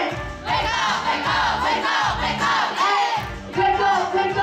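Live hip-hop set: a backing beat under a chorus of many voices shouting together, which takes over from the single rapping voice for about three seconds before the rapper comes back in.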